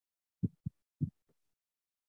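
Four short, dull thumps in quick succession, about a second in all, picked up close to a video-call microphone: handling or bumping noise.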